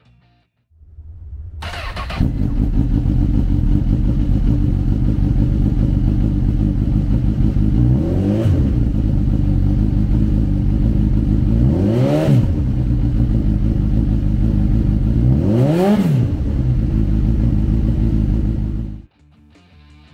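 2014 Honda CB1000R's 998cc inline four-cylinder engine, fitted with an aftermarket slip-on muffler, cranked on the electric starter and catching about two seconds in, then idling steadily. It is blipped three times, each rev rising and falling back to idle, about four seconds apart, and shut off suddenly near the end.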